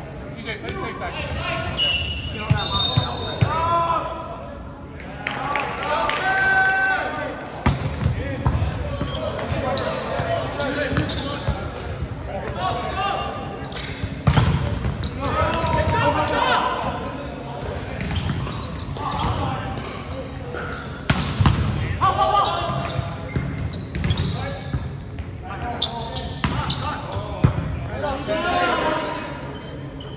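Indoor volleyball play in a gymnasium: players shouting calls and chatter, echoing in the hall, with sharp smacks of the ball being served and passed.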